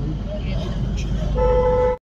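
Steady low rumble of a vehicle driving, heard inside its cabin, and near the end one steady horn honk lasting about half a second.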